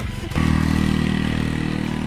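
Motor scooter engine under load with two riders aboard, running steadily. It gets louder about a third of a second in as the scooter moves off up a rough, steep lane where it has been struggling to climb.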